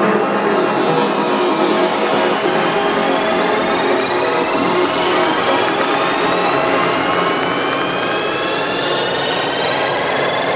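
Psytrance breakdown without the kick drum: a dense wash of synth noise with several synth sweeps rising slowly and steadily in pitch, a build-up riser.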